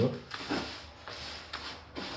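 Hands stirring and kneading groundbait mix in a plastic bucket: a soft, grainy rustling with a few faint scrapes.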